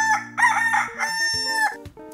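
Rooster crowing once: a full cock-a-doodle-doo in three parts, the last note long and held, dropping off near the end.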